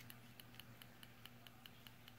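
Faint, rapid tapping, about five light ticks a second, as the pocket clip of a Benchmade 781 Anthem folding knife knocks against its integral titanium handle each time the knife is gripped. The clip sits slightly off the handle scale, which lets it tap.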